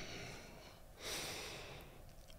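A man's soft breath out through the nose, starting about a second in, over faint room tone.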